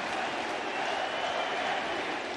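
Steady crowd noise of a large, sold-out baseball stadium crowd.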